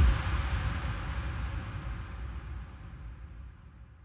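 Logo sound effect: a sudden noisy hit with a deep rumble that dies away slowly over about four seconds, its high end fading out first.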